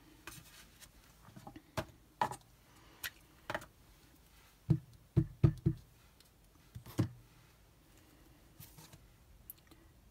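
Light clicks and knocks from a clear acrylic stamp block and an ink pad being handled on a craft desk, with a quick run of about four taps about five seconds in as the stamp is inked.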